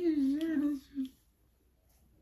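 A single voice holding a wavering sung note that stops within the first second, followed by one short blip and then near silence.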